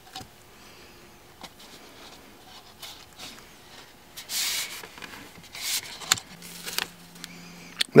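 Masking tape being handled against a cut plastic soda bottle: light rustles and taps, with two short rasping rubs near the middle as a strip is pulled and smoothed onto the plastic.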